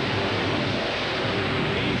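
Monster truck engine running hard as the truck drives over a row of junk cars, heard as a steady loud din.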